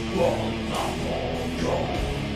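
Live metal band playing a slow song on distorted electric guitars, with held, ringing chords and a couple of swells in loudness.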